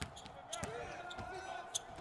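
Basketball court sound at a low level: a ball bouncing on the hardwood floor, a few scattered knocks and clicks, and faint voices.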